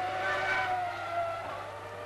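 A Formula One car's engine running at high revs on track, a high-pitched note that rises slightly, then swells and fades away as the car goes past.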